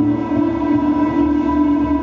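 Live ambient instrumental music: a sustained, droning chord from amplified acoustic guitars and electronics, held steady without a change.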